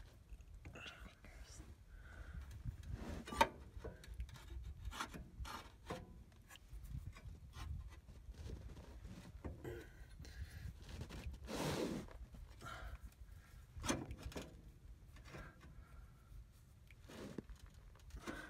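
Faint scraping, rubbing and light clicking of metal and rubber parts as a radius arm's threaded end, fitted with a new bushing and washer, is worked by hand into its frame bracket on a Ford E350. A sharper click comes about three seconds in, and a brief louder scrape about twelve seconds in.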